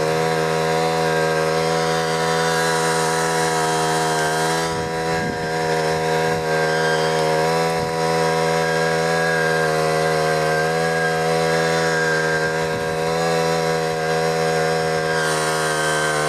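Small petrol engine of a Simpson capstan winch running steadily at high speed with an even pitch.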